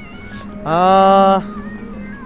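A single drawn-out, voice-like call held at one steady pitch for just under a second, starting with a slight upward slide.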